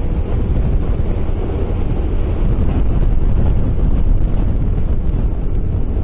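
Wind rushing over the camera microphone on a Sym MaxSym 400 maxi-scooter at highway speed, with the low rumble of the ride underneath, steady throughout.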